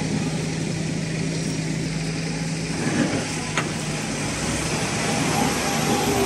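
Large Fendt tractor engine running under load while pushing maize silage up a silage clamp; the engine note shifts about halfway through and grows a little louder near the end. A sharp click is heard once, just past the middle.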